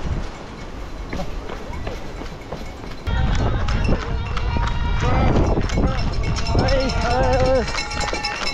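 A runner's footsteps on a dirt trail for about three seconds, then, suddenly louder, several people shouting and cheering the runner on.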